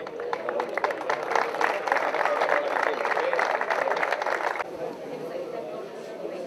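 Crowd applauding: dense, irregular hand-clapping over people's voices, cut off abruptly about four and a half seconds in, after which only voices remain.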